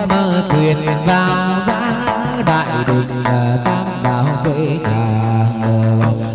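Hát văn ritual music: a moon lute (đàn nguyệt) plays a sustained melody over a regular percussion beat.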